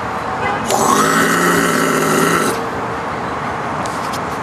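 A man throat-singing two notes at once: a single harsh, held note of about two seconds, starting just under a second in, with a strong high overtone ringing above the low drone.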